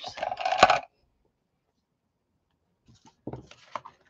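Clatter of stiff plastic stencil packs being handled and shuffled on a table, with a sharp knock under a second in. A few faint taps and rustles follow near the end.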